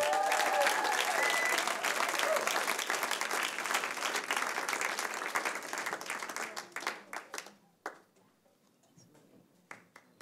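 Audience applauding, with a few cheers at first; the applause dies away after about seven seconds, leaving a few scattered claps.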